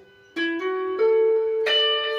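Clean electric guitar picking a slow seben (soukous) lick note by note. After a brief gap, four plucked notes sound in turn, each left to ring into the next, the last one brighter, near the end.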